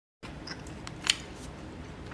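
Chopsticks clicking against a plastic bowl: a few light clicks, the loudest about a second in.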